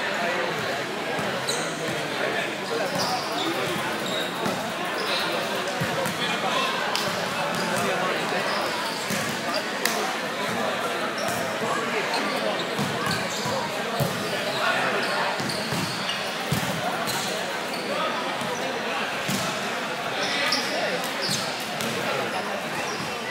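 Hubbub of many voices echoing in a large gymnasium, with sharp smacks of a volleyball being struck and bounced every few seconds.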